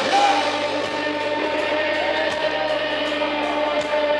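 Live rock band playing, with singing over guitar, keyboard and bass. A long held note comes in about halfway through.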